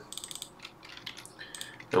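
Computer keyboard keys clicking: a quick run of keystrokes about half a second long, then a few scattered, fainter key clicks.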